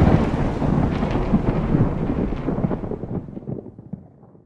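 The rumbling, crackling tail of a thunder-like boom sound effect on a logo reveal, fading out over about four seconds.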